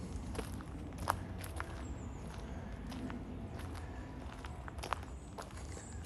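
Footsteps on a woodland path of fallen leaves and bark, heard as irregular sharp clicks and snaps underfoot over a steady low rumble.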